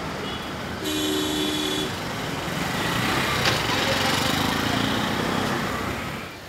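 Road vehicle noise outside, swelling in the second half as a vehicle passes close by, with a steady two-note tone lasting about a second near the start.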